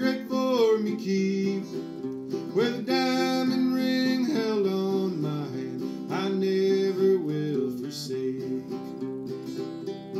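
A man singing an old-time ballad and accompanying himself on a fingerpicked acoustic guitar. The singing stops about three-quarters of the way through, and the guitar plays on alone.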